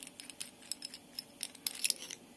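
Small irregular clicks and ticks of a dissolved oxygen probe's knurled plastic cap being unscrewed by hand from the probe body, with a quick run of clicks near the end as it comes free.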